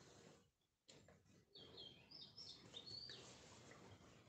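Faint bird chirping: a quick series of short high chirps over low background noise, starting about a second and a half in and stopping a little after three seconds.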